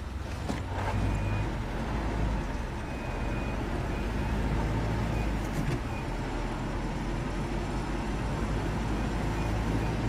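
A motor vehicle driving, heard from inside the cabin as a steady low engine and road rumble.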